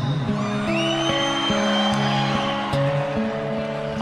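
Instrumental passage of a slow country ballad played by a band, between sung lines. Sustained chords shift every second or so, and a high note slides up about a second in and then holds.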